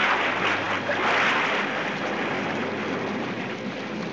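Stormy-sea sound effect: rushing, crashing waves that come in suddenly, loudest in the first second and a half, then ease off.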